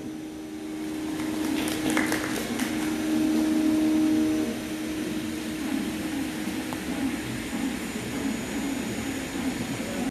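The veena and mridangam music has stopped, leaving room noise with a low steady tone that cuts off about four and a half seconds in. A few light clicks come in the first few seconds.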